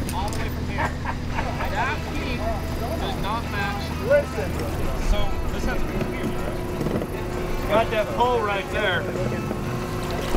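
A steady low engine drone, like a vehicle idling, under scattered talking voices; the drone stops about halfway through.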